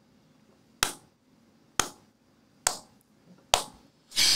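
Four sharp finger snaps, about one a second, each cut short.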